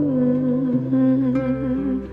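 Song recording: a female voice hums a long, slightly wavering "mmm" over a soft accompaniment with low notes changing underneath. The hummed note stops just before the end.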